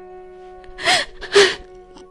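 Two sharp, gasping breaths, like sobbing intakes, from an actor in a radio drama, about a second and a second and a half in, over a steady held chord of background music.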